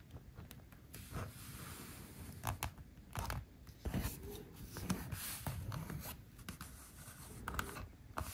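A thin steel hand tool rubbing and scraping along the edge of a stitched leather wallet in a series of short, irregular strokes.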